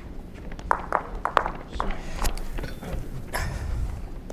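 Lawn bowls clicking against one another as players gather them at the head on an indoor rink: a string of irregular sharp clacks, about seven over the few seconds, over a low hall hum.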